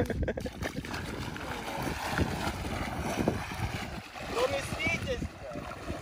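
A person wading quickly into a shallow pond, legs churning and splashing through knee-deep water in a steady wash of sloshing.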